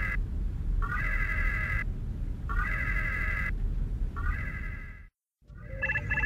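Starship red-alert klaxon sounding for battle stations: a whooping tone that slides up and holds, repeating three times about every second and a half to two seconds over a low rumble. It cuts out briefly near the end, and quicker electronic beeps begin.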